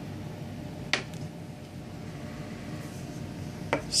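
Quiet room tone with a single sharp tap about a second in and another just before the end: a wax crayon knocked against the paper-covered tabletop. A voice says "three" at the very end.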